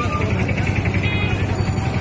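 Motor vehicle engine running close by, with people's voices mixed in.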